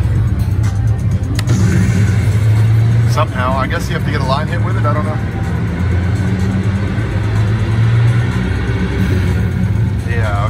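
Casino floor din around a slot machine: a steady low hum with background voices and slot-machine music, and a stretch of voice-like sound from about three to five seconds in.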